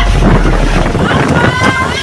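Storm-force wind buffeting a phone microphone: a loud, continuous low rumble under a rushing hiss. Voices are heard over it near the end.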